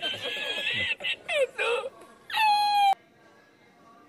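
A high-pitched, voice-like comic sound clip, laughter-like, edited into the soundtrack. A held squeaky tone is followed by quick falling pitch glides about a second in, then a rising tone that levels off and cuts off abruptly about three seconds in.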